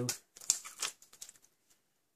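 A plastic-backed sheet of self-adhesive rhinestones being picked up and handled on a craft mat: a quick run of crinkles and clicks lasting about a second, loudest just after it starts.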